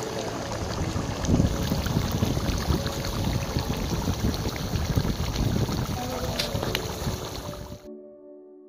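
Chicken curry boiling hard in a large wok, the thick gravy bubbling and spluttering steadily, cutting off abruptly near the end.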